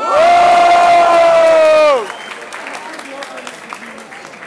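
One loud held shout lasting about two seconds, steady in pitch and falling away at the end. Crowd cheering and clapping follow as a rap battle verse ends.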